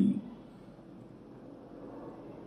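A man's spoken word ends right at the start, followed by faint, steady background noise with no distinct event.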